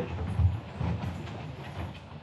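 Several people getting up from rolling office chairs: a low, uneven rumble and knocking as the chairs are pushed back, loudest about half a second in.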